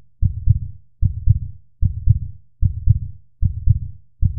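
Heartbeat sound effect: deep lub-dub thumps repeating evenly about every 0.8 seconds, around 75 beats a minute, five beats in all.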